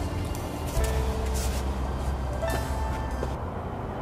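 Background music, a melody of held notes over a low bass, with the hiss of salt pouring into a bucket of water that stops a little over three seconds in.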